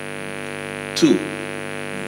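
Steady electrical mains hum, a stack of many evenly spaced tones that does not change. A man says a single word about a second in.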